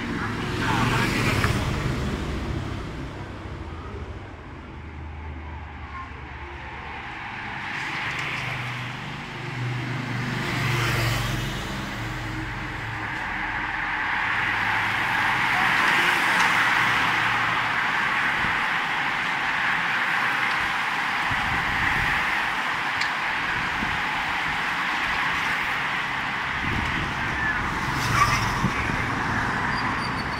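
Escort motorbikes passing early on, then a large bunch of road racing bicycles riding past for about fifteen seconds, a steady hiss of tyres and drivetrains, and a car engine approaching near the end.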